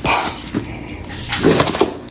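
Handling noise from a handbag being moved about: rustling with a few light clicks from the strap's metal clasps and hardware, louder about one and a half seconds in.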